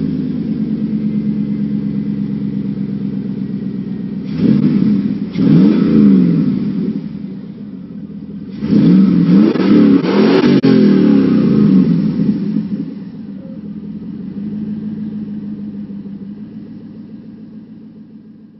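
2003 Chevy Avalanche V8 through a Flowmaster Super 50 series exhaust, idling just after start-up and then revved. Two short revs come about four to six seconds in, and a longer run of several revs around nine to twelve seconds. Then it settles back to a steady idle.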